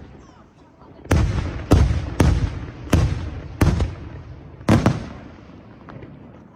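Aerial firework shells bursting: six sharp bangs in about four seconds, starting about a second in, each followed by a rolling echo that fades.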